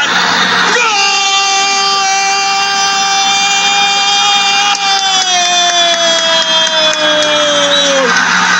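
A football commentator's drawn-out goal call, 'Goooolazo', held as one long shout from about a second in to the end, its pitch slowly sinking, over crowd noise.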